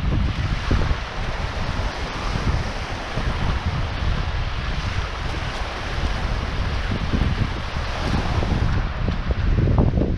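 Small North Sea waves washing up and foaming over a sandy beach, with strong wind buffeting the microphone in a continuous low rumble.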